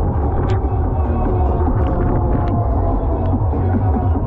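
Loud fairground dance music with a heavy, pulsing bass from the sound system of a Mondial Shake R5 ride, heard from a seat on the spinning ride, with a few short ticks in among it.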